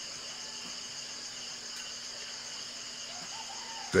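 Steady, high-pitched chorus of insects, a continuous shrill buzz with no break, with a faint short call about three seconds in.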